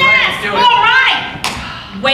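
A performer's voice with rising and falling pitch, then a single thud about one and a half seconds in.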